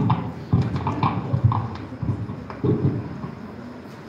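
A handful of dull thumps and knocks, irregularly spaced and loudest near the start: handling noise from a microphone on its stand as it is adjusted before speaking.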